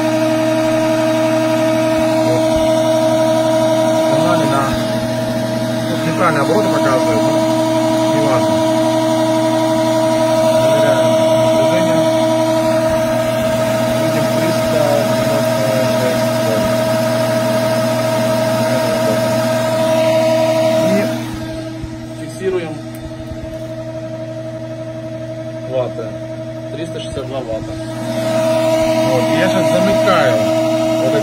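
Old DC electric motor with brushes, run from a speed controller, spinning at a steady speed with a steady whine and hum. The sound drops in loudness for several seconds past the two-thirds mark, then comes back near the end.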